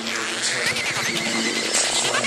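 Psytrance track: held synth notes under quick, repeated rising and falling synth glides.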